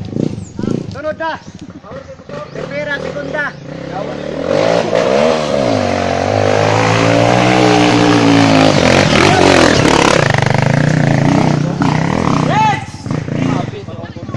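Dirt bike engine revving hard as the rider climbs a steep dirt trail and comes close. The revs rise and fall repeatedly, grow louder to a peak in the middle and fade near the end.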